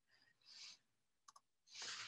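Near silence broken by a few faint clicks: one right at the start and a quick pair a little past halfway through. A faint breath comes just before the end.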